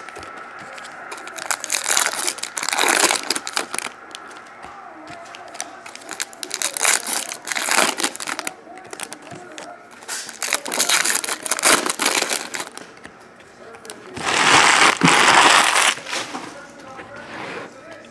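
Foil trading-card pack wrappers being torn open and crinkled by hand in irregular bursts, the longest and loudest crinkle about fifteen seconds in.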